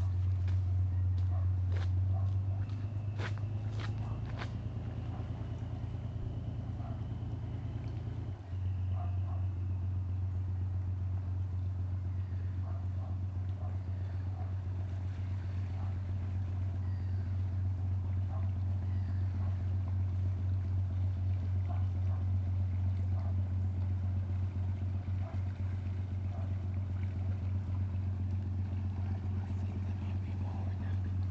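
Barge's diesel engine running with a steady low drone while it manoeuvres to turn round. The note shifts about two seconds in and the full drone returns abruptly about eight seconds in; a few sharp clicks sound around three to four seconds in.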